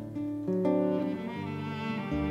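Instrumental passage between sung lines: an acoustic guitar played with an orchestral string section of violins and cellos holding sustained notes. The chord changes about half a second in.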